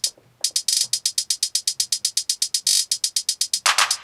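Drum-machine hi-hat pattern playing on its own from a Novation Circuit Tracks: fast, even ticks with short rolls, starting after a brief gap. A fuller hit joins near the end.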